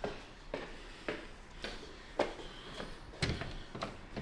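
Footsteps on a concrete parking-garage stair landing, an even walking pace of about two steps a second, with a slightly heavier step about three seconds in.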